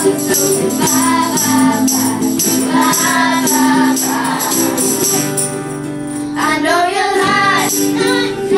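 A group of young girls singing together in unison over strummed ukuleles and acoustic guitars, with a steady strumming rhythm. The voices drop out briefly for about a second in the second half while the strumming carries on.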